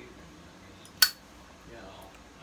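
A single sharp metallic click about a second in, with a brief ring: a metal pipe lighter's lid snapping shut once the pipe is lit.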